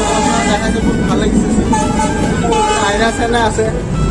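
A voice singing or talking over background music, with the steady low rumble of a moving passenger train underneath.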